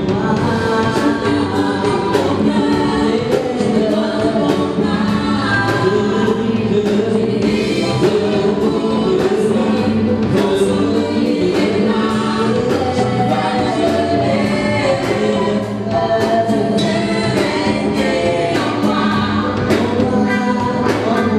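Live gospel worship song: several voices singing together in harmony over keyboard and a drum kit keeping a steady beat.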